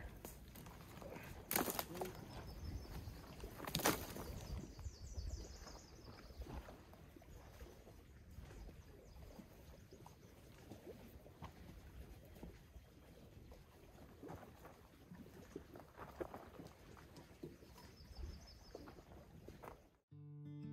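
Two sharp wooden knocks about two seconds apart as kindling is worked at a campfire ring, followed by a faint low rumble of wind on the microphone.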